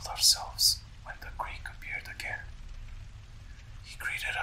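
A man whispering narration, with sharp hissing consonants in the first second and trailing off fainter later, over a steady low background hum.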